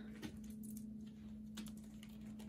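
Faint, light clicks and taps of a deck of playing-size cards being handled, a few scattered strokes over a low steady hum.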